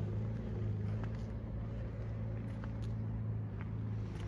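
Honda CB500X's parallel-twin engine idling steadily, a low even hum.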